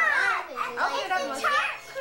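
Young children talking excitedly, with a laugh about a second in.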